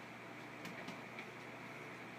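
A cat's paw patting at a TV screen: three faint soft taps over a steady low room hum.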